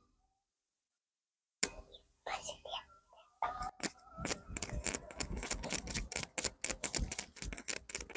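Faint crackling rustle of dry leaves underfoot and clothing brushing a clip-on microphone as a barefoot child gets up and walks off, a rapid run of small clicks starting about three and a half seconds in.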